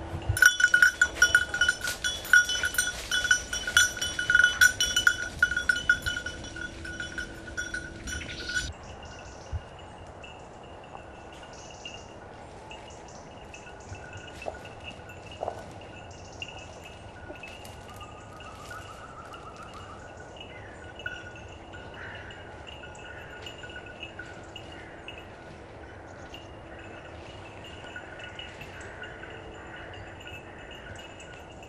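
A hunting dog's bell jingling fast and loud as the dog runs through the cover. About nine seconds in it cuts off sharply, and after that the bell is heard only faintly and on and off, farther away.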